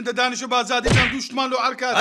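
Fast, rhythmic talking, with a single sudden thump about a second in.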